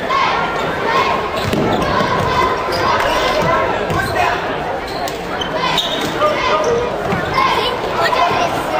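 A basketball dribbled on a hardwood gym floor, with shouting voices echoing in the large gymnasium.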